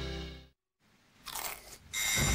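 Music fades out into a moment of silence. About a second in, someone starts crunching potato crisps.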